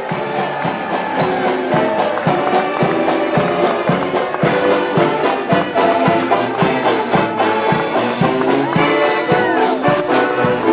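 Mummers string band playing as it marches: banjos, saxophones and accordion over a steady drum beat of about two strokes a second.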